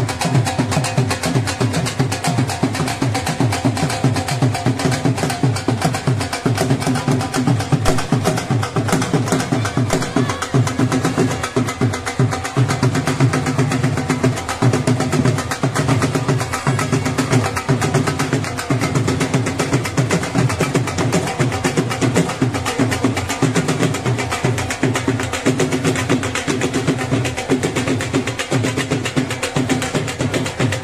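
Traditional folk drums (dhol-type barrel drums) played in a fast, dense, unbroken rhythm, with a held pitched tone running through the drumming.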